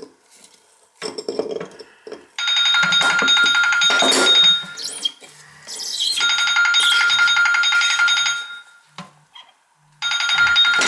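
A mobile phone ringing: a ringtone of steady high tones with a fast pulse, in two stretches of about two seconds each, with short low buzzes underneath. A brief clatter comes about a second in.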